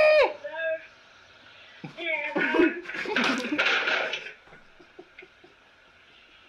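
A burst of voice and laughter, with noisy, clattering sounds mixed in, about two seconds in and lasting about two seconds.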